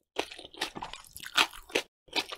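Close-miked chewing of saucy food: crisp crunches mixed with wet squishes, about five in quick succession, the loudest about one and a half seconds in.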